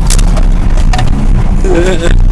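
Vehicle driving over rough dirt, heard from inside the cab: a loud, steady low rumble of engine and tyres, broken by a sharp knock just after the start and another about a second in, with a short vocal exclamation near the end.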